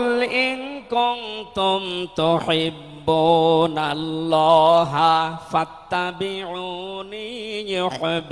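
A man chanting Quranic Arabic in a melodic recitation style (tilawat) into a microphone. He holds long, ornamented notes with wavering pitch in several phrases, the first opening with a rising swoop.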